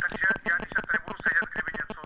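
A faint, thin voice over a telephone line, speaking without clearly made-out words.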